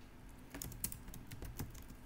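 Typing on a computer keyboard: a string of light keystroke clicks at an uneven pace.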